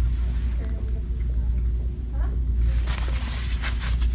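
Steady low rumble of shop background noise with faint distant voices, and a short rustle about three seconds in as the phone and the clothes on the rack are handled.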